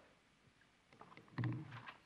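Near silence in a pause between sentences, then a brief low hum from a man's voice just past the middle, with a few faint clicks around it.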